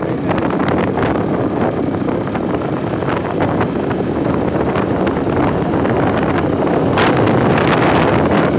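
Wind buffeting the phone's microphone on a moving two-wheeler, over road and engine noise, with a stronger gust near the end.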